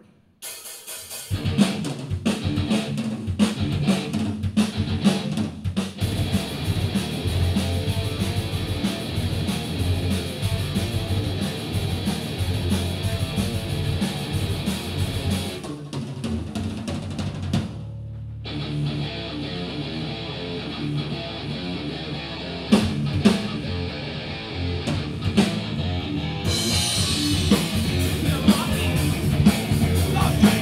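A live metal band starts its song about a second in, with a drum kit and electric guitars played loud through amplifiers. Past the middle the band breaks off briefly, leaving a low note ringing, then comes back in full.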